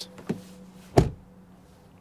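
Genesis GV70 EV car door being shut: one solid thump about a second in, with a faint click shortly before.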